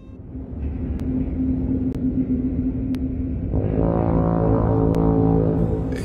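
A deep rumble builds up, with faint ticks about once a second. About three and a half seconds in, a steady, deep, horn-like tone of several pitches joins it. This is the opening sound design of a film trailer over a night sea with a ship.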